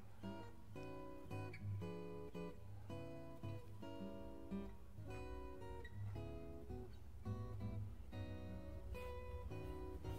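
Background music: acoustic guitar strumming chords, which change about every half second.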